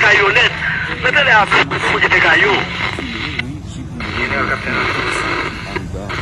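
People talking and calling out over one another, with a low steady hum underneath.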